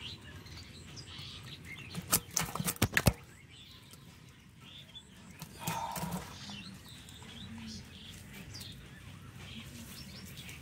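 Live fish flapping against a woven bamboo basket: a quick run of sharp slaps about two to three seconds in, and a shorter burst of flapping near the middle. Birds chirp faintly in the background.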